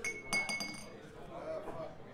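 Glassware clinking as beer is handed out: a few sharp clinks in the first half second, one ringing on briefly before it fades, with faint voices after.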